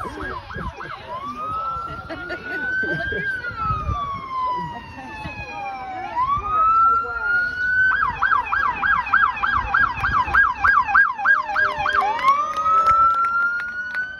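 Electronic emergency-vehicle siren switching between modes: a quick warbling yelp at first, then a slow rising and falling wail, then a fast yelp of about three to four cycles a second for several seconds, then a slow rise again.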